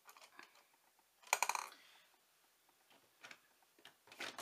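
A few light clicks and one brief clatter about a second and a half in: makeup products and tools being picked up and handled.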